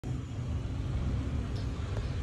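Steady low rumble of outdoor background noise, with a faint even hiss above it.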